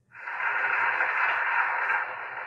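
Audience applause from the opening of an embedded TEDx talk video, played back through a computer speaker. It starts abruptly and holds steady.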